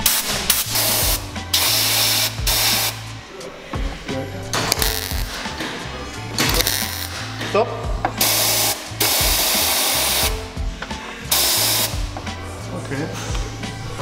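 Welder crackling in short bursts on the car body's sheet metal, about five bursts of roughly a second each, over background music with a steady bass line.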